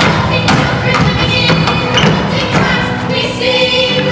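A group of young singers performing a musical-theatre number over a backing track, with heavy thuds about every half second in the beat.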